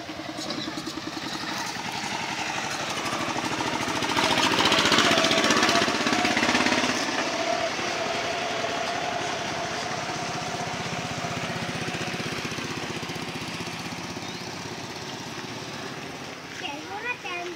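Motorcycle engine running, growing louder to a peak about four to seven seconds in, then settling into a steady run.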